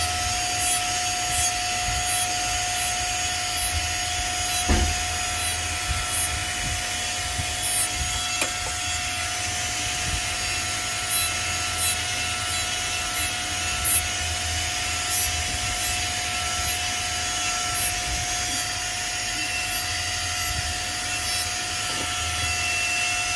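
Jeweller's rotary handpiece running with a steady high whine while its small burr grinds against a gold bracelet, with brief louder scrapes each time the burr bites the metal.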